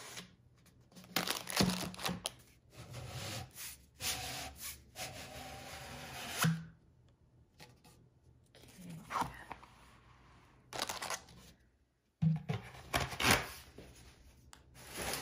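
Handling noise of a rolled diamond painting canvas being taken out of a cardboard shipping tube and laid on a stone countertop: rustling, scraping and tearing sounds in several short bursts with pauses between them.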